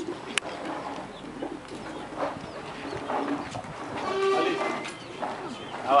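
Birds calling, with faint voices in the background. A sharp click comes about half a second in, and the loudest call comes just after four seconds in.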